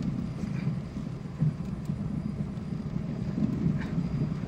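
Car driving slowly through rain and floodwater, heard from inside the cabin as a steady low rumble of engine and tyres, with a few faint ticks.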